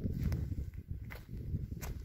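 Footsteps on dry dirt, about three steps in the two seconds, over a continuous low rumble.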